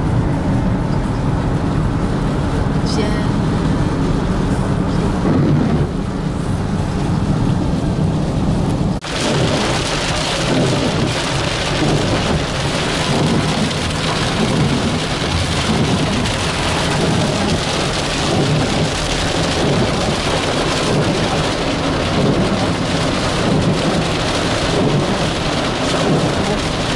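Rain on a moving car, heard from inside the cabin, over a steady low road and engine rumble. About a third of the way through the rain turns heavy, a loud dense hiss and drumming on the glass and roof.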